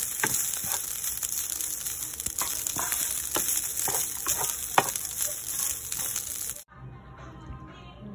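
Leftover rice sizzling as it is stir-fried in a pan, with a wooden spatula scraping and knocking against the pan every second or so. The sizzling cuts off abruptly near the end.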